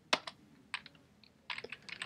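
Computer keyboard being typed on: a single sharp keystroke just after the start, which runs a terminal command, then a few scattered keystrokes and a quick run of key clicks near the end as a new short command is typed.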